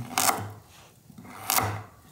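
A knife slicing through a raw carrot on a wooden cutting board: two short, sharp cuts about a second and a half apart, the first louder.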